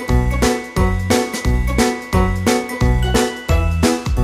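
Background music with a steady beat: a low bass note and a bright percussion hit repeating about every half second under held high notes.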